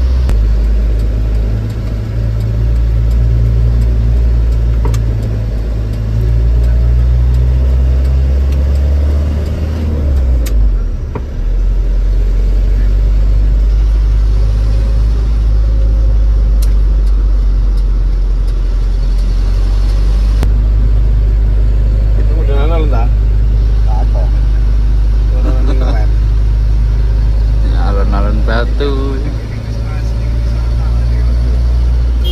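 Microbus's Mitsubishi engine heard from inside the cab, a steady low drone as it drives through town. The engine note dips briefly about ten seconds in, then settles back into a steady run. Voices are heard faintly near the end.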